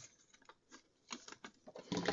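Striped designer paper being handled by hand: a few faint, scattered rustles and light taps as the cut-out square frame is worked free.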